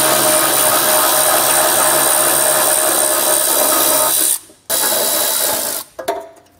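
Cordless ratchet motor running steadily, backing off a heat-shield nut: one long run of about four seconds, a short pause, then a second run of about a second.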